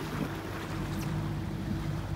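A boat engine idling with a steady hum, mixed with wind and water noise.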